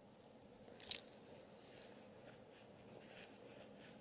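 Near silence with faint rustling of a small fleece doll hoodie being pulled down over a doll's head, one slightly louder rustle about a second in.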